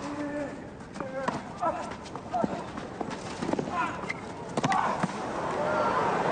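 Tennis ball being struck and bouncing in a rally: a series of sharp knocks at irregular intervals, mixed with short voice sounds. Crowd applause begins to build near the end.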